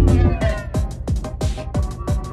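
Electronic free-party tekno music from a live set: the heavy bass drops out about half a second in, leaving a break of quick hits that fall in pitch, about four a second, with falling synth glides.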